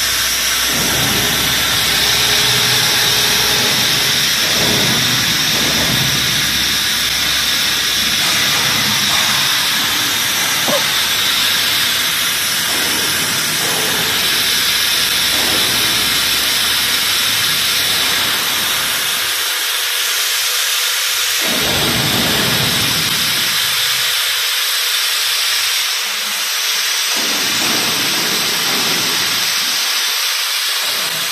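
Steady loud hiss of a vacuum frying machine running, with a fainter low rumble underneath that drops out in places during the last third.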